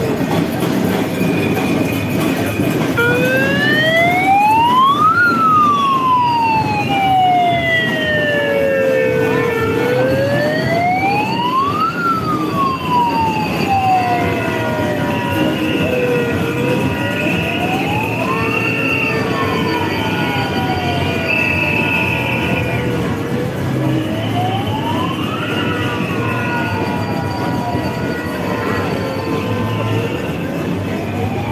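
A siren wailing, its pitch climbing quickly and then sinking slowly, four times over, above the steady noise of a large crowd marching.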